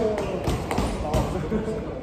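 Feet thudding on a wrestling ring's mat: a few quick thumps in the first second or so, with people's voices in the background.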